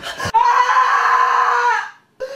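A woman screaming: one loud, long scream held at a steady high pitch for about a second and a half, cutting off just before the end, after a brief sharp sound at the very start.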